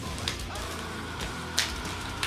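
Packaging being opened by hand, with two sharp crinkles: one about a quarter second in and a louder one near the end.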